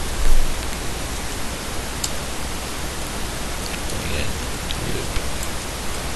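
Steady hiss from the recording's microphone noise. A short low thump comes about a third of a second in, and a few faint clicks of computer-keyboard typing follow.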